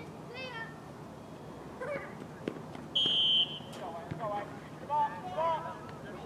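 A referee's whistle blows one short, steady blast about three seconds in, signalling the restart of play after a stoppage. Players and spectators shout briefly around it.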